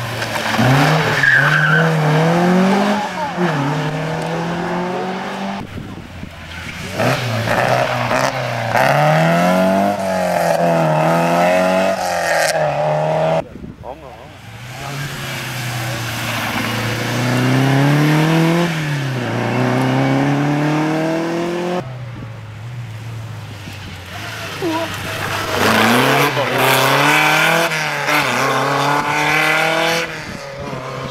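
Historic rally cars' engines revving hard as they drive through a junction on a tarmac stage, the pitch climbing and dropping with each gear change and lift. Several cars pass in turn, each cut off abruptly.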